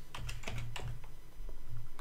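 Typing on a computer keyboard: a quick run of key clicks as a word is keyed into a search box.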